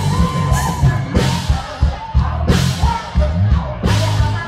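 Live band music played loud through a stage PA, with heavy bass and regular drum hits. A woman sings into a microphone over it, holding a note near the start.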